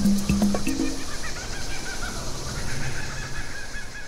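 Outro music with held notes that ends about a second in, giving way to an animated nature soundscape of rapid, repeated bird chirps over a faint steady hum.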